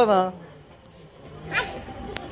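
A high-pitched, drawn-out voice trails off at the start. After a short lull, a brief high call comes about one and a half seconds in.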